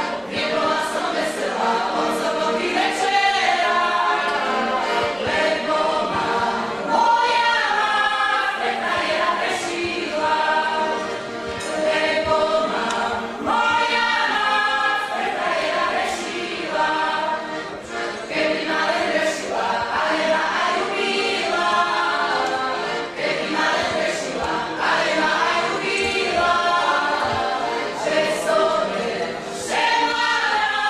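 A folk singing group sings a song together in several voices, in continuous sung phrases.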